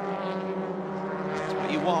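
Racing touring cars' engines running at high revs through a corner, a steady engine note holding one pitch. A commentator's voice comes in near the end.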